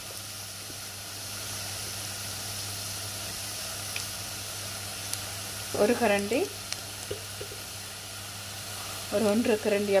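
Sliced beetroot sautéing in sesame oil in a clay pot: a steady, soft sizzle.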